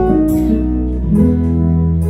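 Live band playing the instrumental lead-in to a slow ballad: acoustic guitar chords over keyboard with a steady bass.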